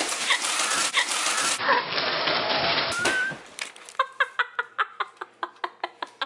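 Loud crinkling and rustling of clear tape stretched across a doorway as a man walks into it and goes down to the floor. From about four seconds in comes a run of short, quick laughs, about five a second.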